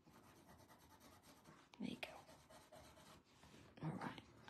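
Near silence with faint rubbing and scratching of a drawing tool on a black paper drawing tile, and a brief soft vocal sound about two seconds in.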